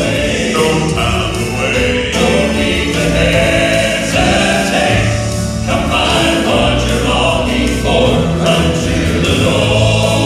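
Male gospel quartet singing in four-part harmony, with piano accompaniment and long held chords over a bass line.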